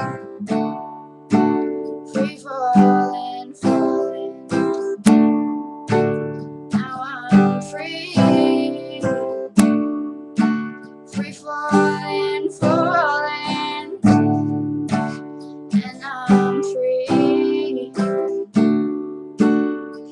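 Acoustic guitar strummed in a steady rhythm of chords, an instrumental stretch between sung lines.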